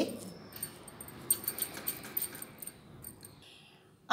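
Faint rubbing and soft pressing of a wooden rolling pin rolled back and forth over boiled potato on a round board, mashing it smooth, with a few light clicks. It dies away near the end.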